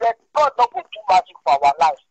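Speech only: a person talking in quick syllables over a video call, the voice thin and cut off in the highs like a call connection.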